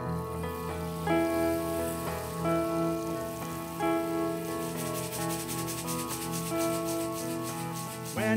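Acoustic guitar chords with a rainstick being tipped over them, its trickling hiss growing stronger about halfway through.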